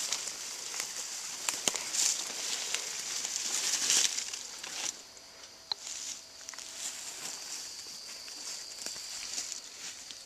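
Footsteps crunching and rustling through dry fallen leaves, with many small crackles; louder for the first five seconds, then quieter.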